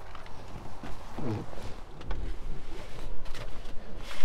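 Microphone rubbing and handling noise as a person climbs into a van's driver's seat. There are scattered light knocks, a brief vocal sound a little over a second in, and a low rumble from about halfway.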